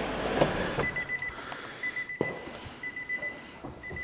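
Nissan Murano CrossCabriolet's dashboard warning chime sounding. It is a quick run of high beeps repeated about once a second, with a single click near the middle.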